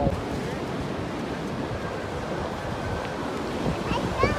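Steady wash of ocean surf breaking on a beach, with wind buffeting the microphone.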